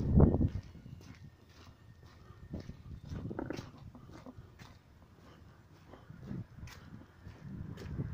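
Footsteps on a paved street, short sharp steps roughly every half second. A loud low rumble fills the first half second.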